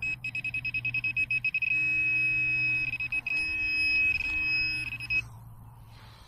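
Handheld metal-detecting pinpointer sounding a high beep: rapid pulses that run together into an almost unbroken tone, with a few brief breaks, as the probe closes on a metal target in the dug hole. The tone stops about five seconds in.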